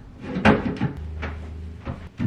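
A few knocks and clunks of a metal Christmas tree stand being handled and set on a wooden crate, the strongest about half a second in.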